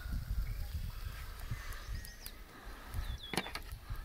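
Outdoor background with an uneven low rumble of wind on the microphone, and a few faint bird chirps about two and three seconds in.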